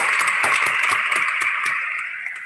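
Applause from several people over a video call: a dense patter of claps, tapering off slightly toward the end.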